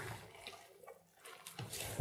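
Faint wet squelching of a hand kneading chunks of pork with sliced onion and spices in an enamel bowl, a few soft squishes as the onion is pressed into the meat to release its juice.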